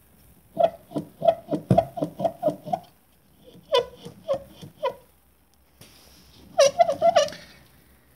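Opel Astra dual-mass flywheel rocked back and forth by hand, its two halves knocking together in short, ringing metallic clunks: a quick run of about ten, four more in the middle and a fast cluster near the end. The knock comes from free play between the flywheel's two masses.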